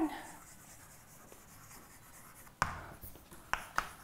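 Chalk writing on a blackboard. After a quiet stretch, sharp chalk taps and short strokes start about two and a half seconds in, several in quick succession.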